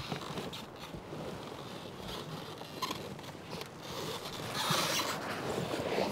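Rustling and scraping of a person moving about in a large folded-paper boat, with scattered small knocks. It gets louder for about a second near the end.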